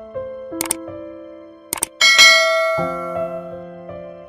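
Subscribe-button animation sound effects over soft keyboard music with sustained notes: two quick clicks, the first under a second in and the second just before two seconds, then a bright bell chime at about two seconds that rings out and fades.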